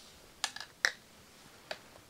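Three short, sharp clicks from a Perkins handheld tonometer being handled as it is lifted out of its case. The loudest comes just under a second in.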